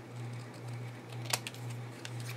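Scissors cutting paper, with one sharp snip about halfway through, over a steady low hum.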